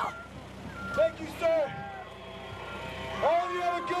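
Diesel engine of a Case backhoe loader idling steadily, with short shouted voices over it about a second in and again near the end.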